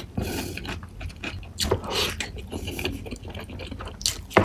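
Close-miked eating sounds of egg curry and rice eaten by hand: rapid wet clicks and smacks of chewing, with curry-coated fingers squishing the food.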